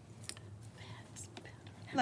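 Quiet meeting-room tone with faint whispering and a few soft rustles and clicks.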